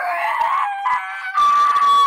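A child's high-pitched, drawn-out squealing shout, bending in pitch at first and then held on one note for the last half second.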